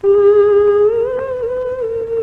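A woman humming a slow, wordless melody in long held notes that rise gently about a second in, as the vocal opening of a Hindi film song.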